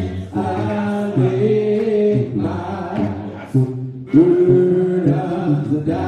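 A church congregation singing a hymn a cappella, many voices together holding long notes with short breaks between phrases.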